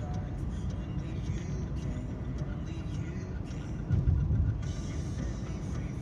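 Road and engine noise heard from inside a moving car's cabin: a steady low rumble that swells briefly about four seconds in.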